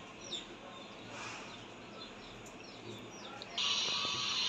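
Faint, scattered bird chirps over quiet background noise; a little before the end a steady hiss comes in suddenly.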